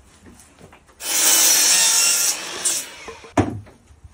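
Rough scraping of wood on wood for about two seconds, loudest at first and then tailing off, followed by a single sharp wooden knock.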